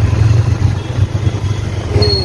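Motorcycle engine running while riding at low speed: a steady low drone with a fast flutter.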